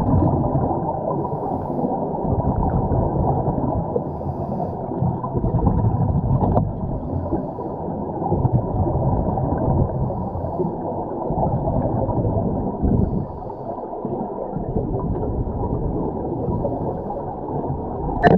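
Muffled underwater rumble and gurgle of a scuba diver's regulator and exhaled bubbles, heard through an underwater camera, swelling and easing every few seconds. A brief knock about six and a half seconds in.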